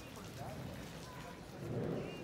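Outdoor background noise with faint, distant voices, swelling louder near the end.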